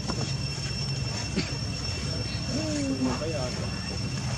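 Outdoor ambience: a steady low rumble and two steady high-pitched tones, with a short wavering voice about two and a half seconds in.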